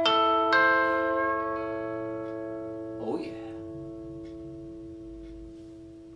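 Bell-like harmonics on a 1969 Fender Telecaster played through a Line 6 Spider IV amp: a couple of chiming notes struck about half a second apart and left to ring, one of them bent slightly upward in pedal-steel style, slowly fading away.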